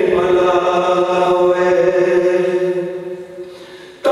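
A man's voice chanting a devotional naat into a microphone, holding one long, steady note with no instruments. The note fades away over the last second or so, and the next phrase starts right at the end.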